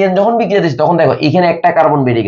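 Speech only: a man talking steadily in Bengali.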